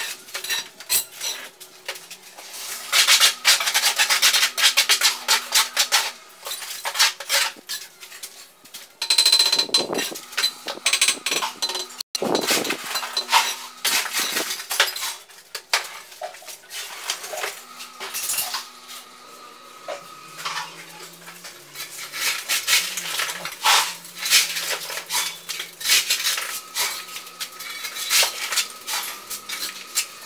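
Steel bricklayer's trowel scraping mortar and knocking against hollow clay bricks: an irregular run of metallic clinks and scrapes, busiest in two spells in the first third.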